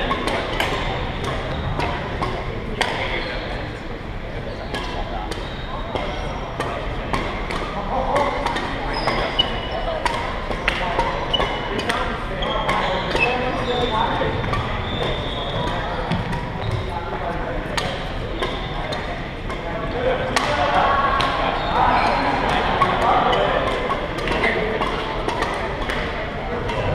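Badminton rackets striking a shuttlecock in a rally, a string of sharp, irregular cracks ringing in a large hall. Spectators chatter steadily underneath, louder in the second half.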